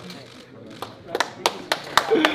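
Scattered hand claps from a few people, starting about a second in, over faint chatter.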